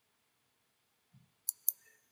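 Near silence, then a soft low thump and two sharp computer mouse clicks about a fifth of a second apart near the end.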